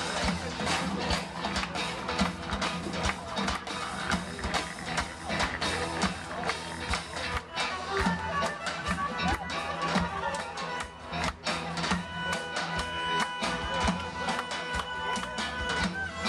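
A Turkish Roma band playing live: davul and drum kit beat a quick, busy rhythm under electric guitar, bass guitar and clarinet. A long high note is held through the last few seconds.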